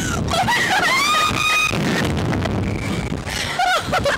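Two women screaming on a slingshot (reverse bungee) ride: long high screams that rise and hold, one after another, over a steady rush of wind on the microphone.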